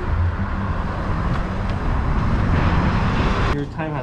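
Loud, steady low rumble with hiss of outdoor noise, which stops abruptly about three and a half seconds in, where a voice begins.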